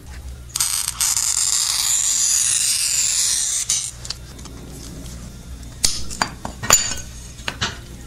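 Glass cutter scoring a sheet of stained glass: a steady gritty hiss lasting about three seconds. Afterwards, a series of sharp clinks of glass pieces.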